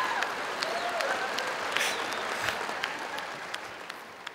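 Theatre audience applauding, the clapping slowly dying away over a few seconds.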